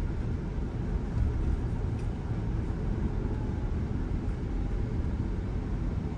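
Steady low road and tyre noise heard inside the cabin of an electric Tesla driving on a freeway.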